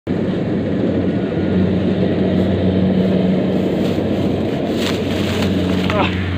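Loud rough rumbling on the microphone, with a steady low hum running underneath like a motor, and a couple of short knocks about four and five seconds in.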